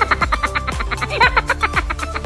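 Bouncy, quirky background music: quick bright plucked notes over bass notes that slide downward in pitch.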